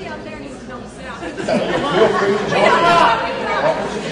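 Many people talking at once in a large hall: overlapping chatter that swells louder about a second and a half in, then eases near the end.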